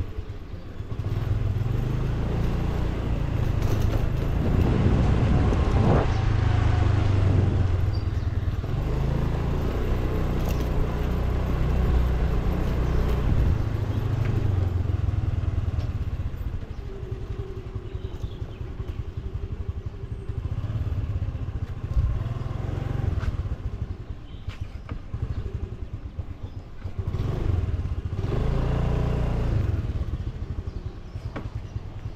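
Motor scooter running while being ridden along slowly, with a steady low rumble. It is louder for the first half and quieter from about halfway on.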